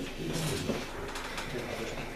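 Pages of a small paper booklet being leafed through, with a low murmuring voice and a few soft clicks.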